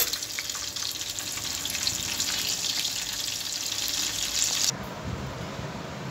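Whole marinated chicken leg frying in oil in a pan on a slow flame: a steady, crackling sizzle. It cuts off suddenly near the end, leaving a quieter low background.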